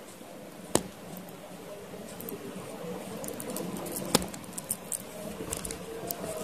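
Clicks and handling noise from a Rolex-branded automatic wristwatch as its crown is pulled out to the date-setting position and worked by hand: one sharp click about three-quarters of a second in, a louder one about four seconds in, and a few small ticks just after.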